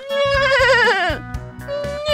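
A horse whinnying: a long wavering neigh that drops in pitch at its end, then a second neigh starting near the end. Background music plays underneath.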